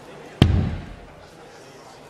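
A steel-tip dart striking the dartboard once about half a second in: a sharp knock with a short, low thud that dies away, over a faint background hush.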